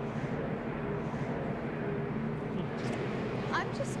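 A steady low hum and murmur of background ambience, with a short rising vocal sound shortly before the end.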